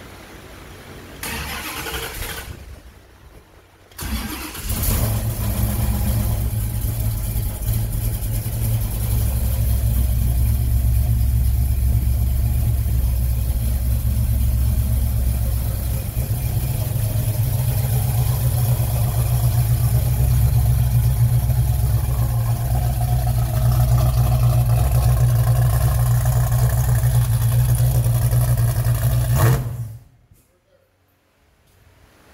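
Classic car's engine cranked briefly about a second in, then firing about four seconds in and running at a loud, steady idle with a deep rumble.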